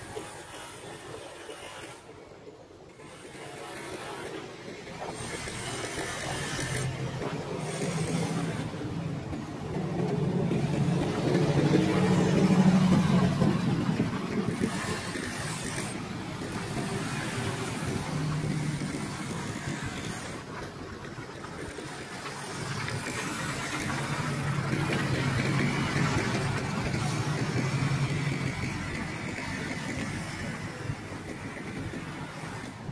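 City street traffic: vehicles passing on the road, their engine and tyre noise building to a loud peak about halfway through and swelling again near the end.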